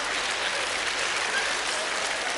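Studio audience applauding, the clapping thinning out over the two seconds.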